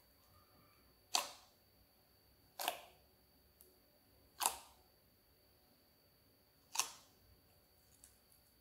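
Clear slime being pressed and kneaded by hand in a glass bowl, giving four short, sharp pops as trapped air pockets burst, one every second or two.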